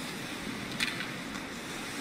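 Faint ice-hockey rink sound of skates on the ice and play on the surface, with a brief sharp scrape just under a second in.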